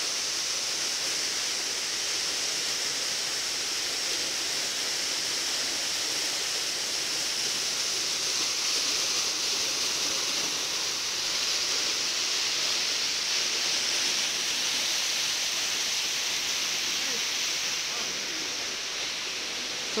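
Waterfall pouring down a rock face and splashing into a pool below, a steady rush of falling water that eases slightly near the end.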